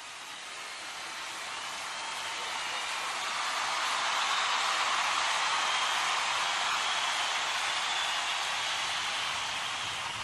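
An even hiss of noise, thin in the bass, that swells over the first five seconds and then eases off slightly.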